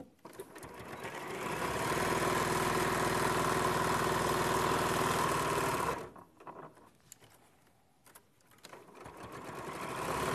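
Electric sewing machine stitching a quarter-inch seam through layers of fabric and wadding: it speeds up over the first two seconds, runs at a steady speed, and stops about six seconds in, with a few light clicks. Near the end it starts again and speeds up.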